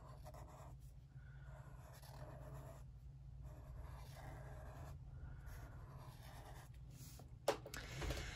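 Felt-tip marker scratching faintly on paper in a series of short strokes with brief pauses, as stripes are drawn, over a low steady hum.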